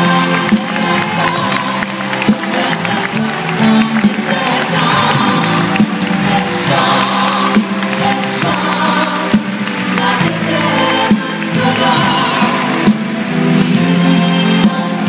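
Live pop band with piano and a backing choir playing an instrumental passage of a song, with sharp drum hits every second or two.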